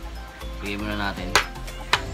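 Two sharp clicks about half a second apart, the loudest sounds here, from a ceramic plate with a metal spoon and fork on it being handled, after a short stretch of a man's voice.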